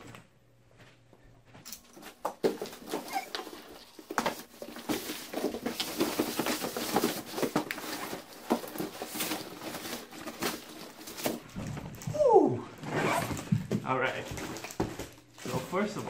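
A large cardboard shipping box and its plastic wrap being handled and torn open: rustling, crinkling and tearing with many knocks and thuds. About twelve seconds in comes a short falling squeal.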